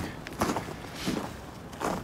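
Footsteps on a footbridge walkway: three steps at walking pace, about 0.7 s apart.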